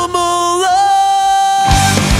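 Emo/post-hardcore rock music: the drums and bass drop out, leaving a single held note that steps up slightly in pitch partway through. The full band crashes back in near the end.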